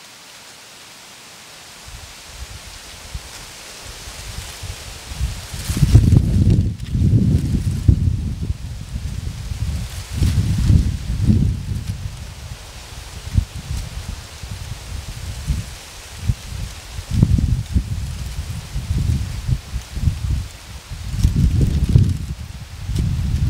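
Wind buffeting the microphone outdoors in irregular gusts: a low rumble that surges and falls away repeatedly from about six seconds in, over a faint steady hiss.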